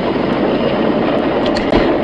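Lottery draw machine running as the multiplier ball is drawn: a steady, even rushing noise with no distinct strikes.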